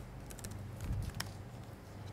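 A few quick laptop keystrokes, short clicks in the first second and a half, over a steady low hum.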